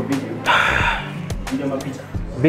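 A loud, breathy gasp-like exclamation from a person about half a second in, lasting about half a second, over background music with a steady low beat and brief talk near the end.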